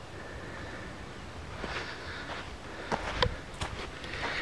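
Footsteps scuffing over bare sandy earth as someone walks with the camera, a few soft steps and scrapes in the second half over a faint steady outdoor background.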